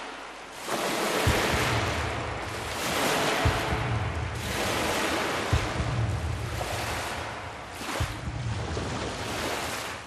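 Rushing noise of waves, swelling and fading in surges every second or two over a low rumble.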